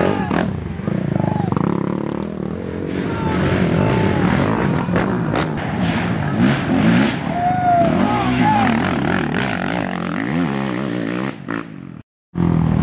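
Racing ATV engines revving up and down as quads accelerate along a dirt woods trail, with spectators' voices mixed in. The sound drops out suddenly just before the end.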